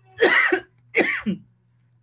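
A man coughing twice in quick succession.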